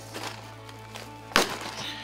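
Football-shaped paper smash egg being broken open by hand, with one sharp crack about a second and a half in, over quiet background music.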